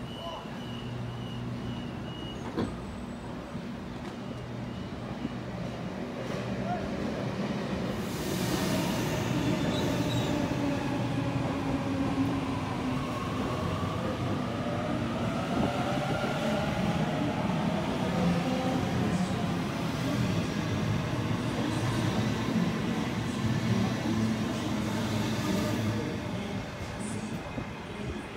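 Sydney Trains Waratah double-deck electric train pulling out of the platform. A short hiss of air comes about eight seconds in, then the traction motors whine, rising in pitch as the train gathers speed.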